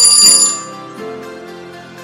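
A loud, bright bell-like ringing sound effect bursts in at the very start and fades within about half a second. It is the signal that the countdown has run out, heard over light background music of plucked notes.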